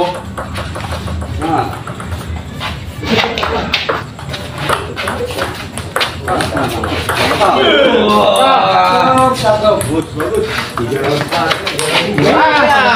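Celluloid-type table tennis ball clicking off paddles and the table in a fast doubles rally, the hits coming at an uneven pace. From about seven and a half seconds in, men's voices call out loudly, and the hits stop.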